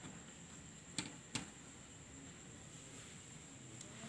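Quiet room tone with a faint steady high whine, broken by two light clicks about a second in, from hands handling a laptop hard drive in its metal caddy.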